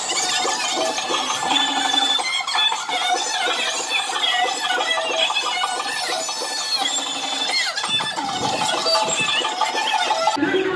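Rapid, high, squeaky chirps and warbles from a kathputli puppeteer's mouth reed (boli), voicing the string marionette.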